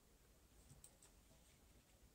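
Near silence: room tone with a few faint, short clicks a little under a second in, from small parts or the circuit board being handled on the workbench.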